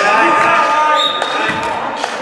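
Youth basketball game in a reverberant gym: voices of players and spectators calling out over a basketball bouncing on the wooden floor, with a held high tone that stops just over a second in.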